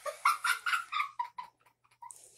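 A child's short, high-pitched excited squeals and vocal noises, several in quick succession over the first second and a half, mixed with rustling from movement.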